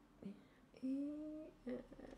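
A woman's short hummed "mm", a hesitation sound, held for about half a second near the middle and rising slightly in pitch, with a couple of faint voiced sounds around it.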